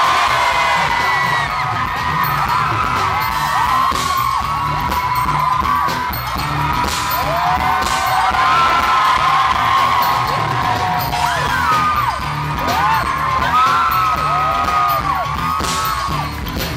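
Loud live pop concert music with a steady beat from the band and sound system, with fans' high-pitched screams and whoops rising and falling over it throughout.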